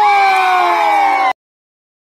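A man's voice through a handheld microphone and PA loudspeaker, holding one long high note that slowly falls in pitch, cut off suddenly a little over a second in.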